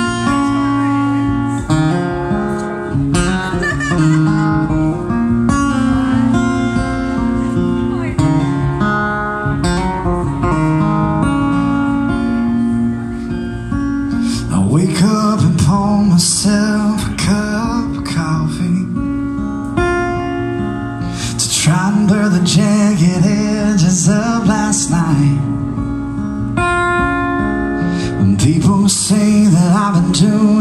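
A steel-string acoustic guitar playing a song's opening, joined about halfway through by a man singing.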